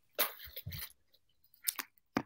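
Strands of small silver-tone metal beads rattling and clinking as a multi-strand necklace is handled and set on a display bust, with a rustle and light knock in the first second and two sharp clicks near the end.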